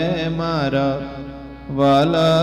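Male voice singing a Gujarati devotional kirtan with ornamented, wavering held notes over a steady low drone; the phrase fades after about a second and a new phrase comes in loudly near the end.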